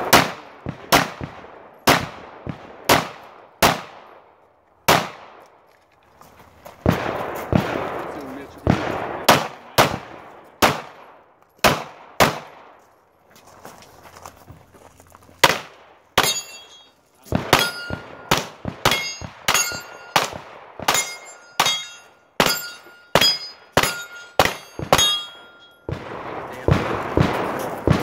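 Gunshots fired in strings with short pauses, each crack followed by an echoing tail. From about halfway through the shots come faster, and many are followed by the brief ringing ping of hit steel targets.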